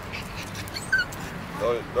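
A small dog giving a few short, high whimpering yips, about a second in.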